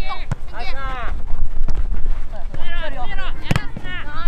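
Children's voices shouting on a football pitch during play, with two sharp thuds, one near the start and a louder one about three and a half seconds in, over a low rumble of wind on the microphone.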